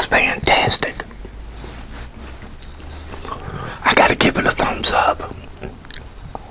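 A man whispering in two short bursts, one at the start and one about four seconds in, with a quiet stretch between.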